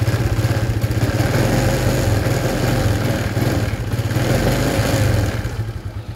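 Scooter engine running on a newly fitted KLX-type carburetor, with the throttle worked by hand at the carburetor. The revs rise gradually and drop back promptly to a steady idle, the sign of a carburetor that is not hanging at high revs.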